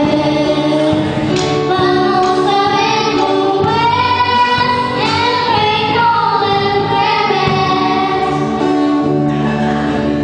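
Two girls singing a song together, with acoustic guitars and an electric bass accompanying them.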